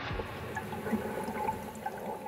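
Water gurgling, with small scattered drips and plinks.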